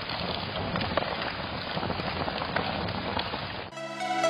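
A steady, rain-like noise with a few faint crackles, which stops abruptly near the end as music comes in.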